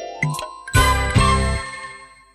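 Closing music jingle: a rising run of notes leads into bright chime-like tones and two final chords about three-quarters of a second and just over a second in, which ring and fade away.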